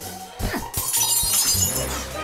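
Cartoon sound effect of laboratory glassware shattering, a shower of breaking glass through most of the second half, over lively background music. A short falling tone sounds about half a second in.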